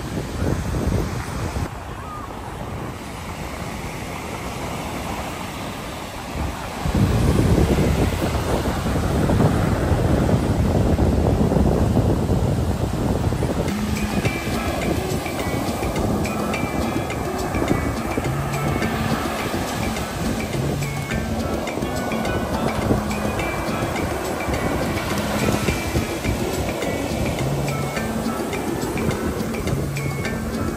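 Surf washing up the beach with wind on the microphone; about halfway through, background music comes in over the surf.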